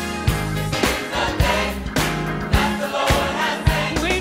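Gospel song with a choir singing over a band: steady bass and a drum beat hitting about twice a second.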